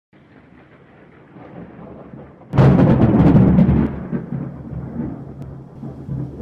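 Cinematic intro sound effect: a low rumble that swells for about two and a half seconds, then one loud booming hit that rings out and slowly fades.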